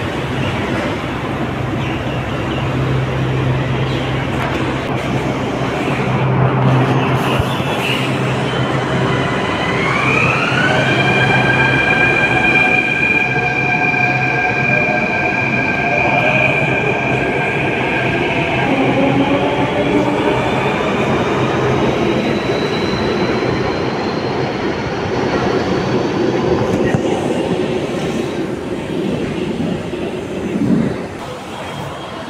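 Delhi Metro train running, heard from inside the car: a steady rumble of wheels on the rails with a low hum, and the whine of the electric traction motors, which glides up in pitch about ten seconds in and then holds. In the second half a thin high tone climbs slowly.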